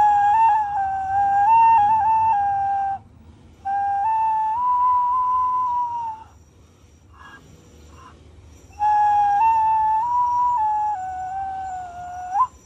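Nguru, a Māori bone flute carved from bull shin bone, blown from the mouth hole: three long-held notes with short pauses between them, the pitch stepping up and down among a few tones as the three finger holes are changed.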